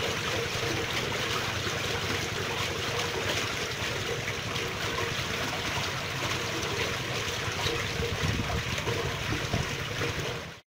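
Water flowing steadily in a stream.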